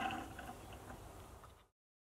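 Faint steady background noise fading out, then cutting to complete silence near the end.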